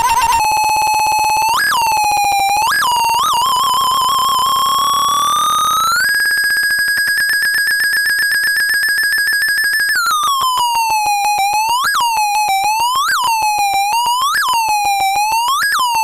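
Circuit-bent toy typewriter giving out a buzzy electronic tone, its pitch bent by hand: a few quick upward blips, a slow rise to a higher held note, then siren-like swoops down and back up every second or so.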